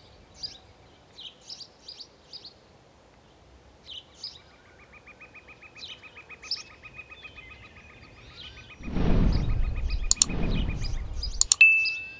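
Garden birds chirping, with a fast, even trill in the middle. About nine seconds in, a loud rush of noise lasts a couple of seconds. Just before the end come a couple of sharp clicks and a short high ding, matching a subscribe-button and bell animation.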